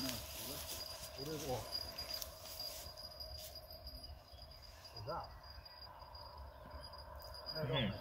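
Quiet outdoor background with a few short snatches of distant voices and a thin, steady high-pitched tone.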